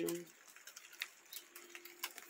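Faint, scattered ticks of rainwater dripping onto leaves and wet ground, a few irregular drops over a faint steady hum.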